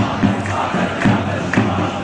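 Large crowd of demonstrators chanting and shouting together.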